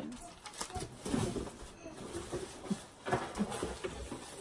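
Quiet, indistinct voice sounds without clear words, with brief rustles of paper being handled.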